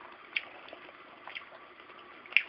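Faint, sparse wet mouth clicks of a cat eating a bit of chicken, with two slightly louder ticks, about a third of a second in and just over a second in.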